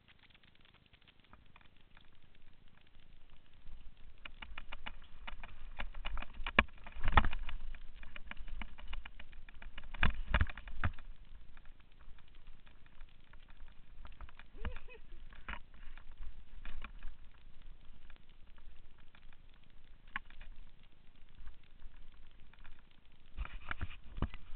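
Mountain bike riding fast down a dirt trail, heard from a camera on the bike or rider: tyre and ride noise with rattles and knocks over bumps, the two loudest knocks about seven and ten seconds in, over a low wind rumble on the microphone. It starts faint and builds over the first few seconds as the bike picks up speed.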